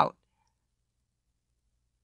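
A spoken word ends at the very start, then near silence: a dead pause with no background sound.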